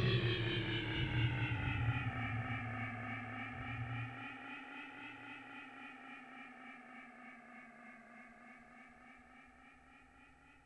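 The end of a dub track: the bass line stops about four seconds in, leaving a held synthesizer tone heavy with echo that slowly sinks in pitch as it fades out.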